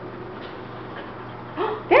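Beagle giving one brief whine near the end, eager for a treat, over quiet room noise.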